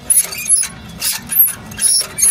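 Detroit DD13 EGR valve linkage being worked back and forth by hand: about five short metallic clicks and scrapes in two seconds. The linkage moves freely and does not stick, so the EGR valve is not seized.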